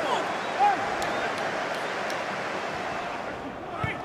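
Steady football-stadium ambience on a match broadcast: an even wash of background noise, with a faint shout under a second in.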